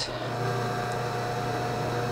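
A steady electrical hum with a faint held whine above it, even throughout with no clicks or scrapes.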